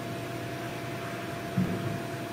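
Steady background hiss with a faint, even tone running under it, and one short, low murmur about one and a half seconds in.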